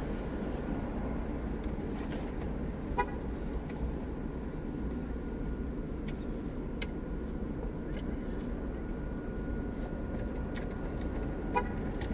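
Steady low hum of traffic and outdoor ambience coming in through open car windows, with a faint steady high tone through most of it and a few small clicks.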